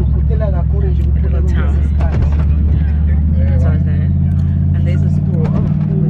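Bus engine and road drone heard from inside the cabin, a steady low hum whose pitch steps up about halfway through, with voices over it.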